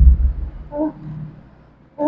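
A woman's low, growly groaning at the start, then a short moan a little under a second in, fading away.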